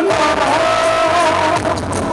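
Live music in a hall: a woman singing long held notes into a microphone over instrumental backing.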